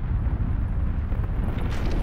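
A deep, steady rumbling noise that cuts in abruptly as the music drops out.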